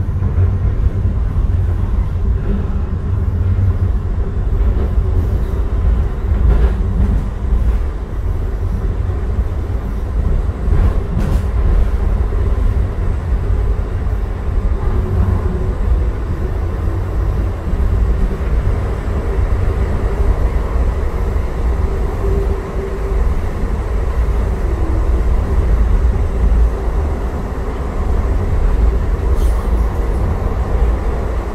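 Calgary C-Train light-rail car running along the track, heard from inside the passenger cabin: a steady low rumble with a faint humming tone above it and a few light clicks from the wheels and rails.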